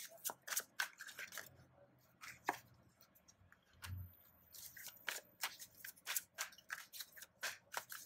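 Hand-shuffling of a worn tarot deck, a quick, irregular run of card clicks and riffling. A soft thump about four seconds in as a card is set down on the cloth.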